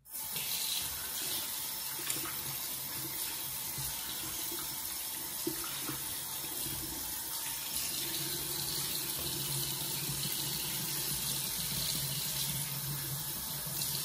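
Bathroom sink tap running steadily into the basin while a face is rinsed clean of foaming cleanser.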